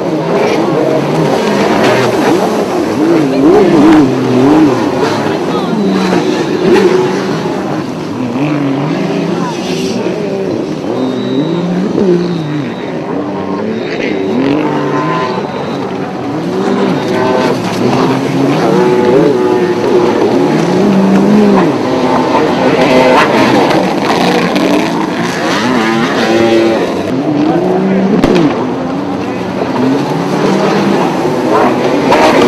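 Several runabout jet ski engines racing at high revs, their pitch climbing and dropping constantly as throttles open and close, the engines overlapping one another.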